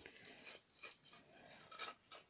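Faint rubbing and scraping as a small wooden box is handled and wiped, a few short scratchy strokes, the clearest one near the end.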